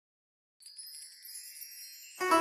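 Silence, then about half a second in a soft, high shimmer of chimes begins, like a wind-chime sweep opening a piece of music.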